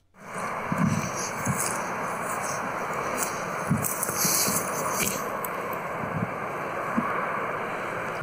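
Playback of an outdoor field recording: a steady hiss of wind and road noise that starts suddenly, with a few soft thuds. This is the noise-reduced copy of the audio.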